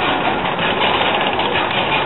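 Suspended roller coaster train running along its track: a loud, steady rush of wheel rumble and air noise.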